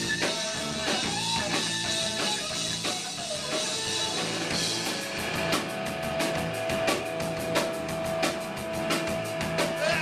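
Rock band playing live: electric guitar, bass guitar and drum kit. About halfway through, a guitar note is held while the drums keep up fast, even cymbal strokes.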